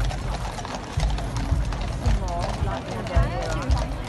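Cavalry horses' hooves clip-clopping on the road as a mounted column rides past, over the chatter of a large crowd, with raised voices from about halfway through.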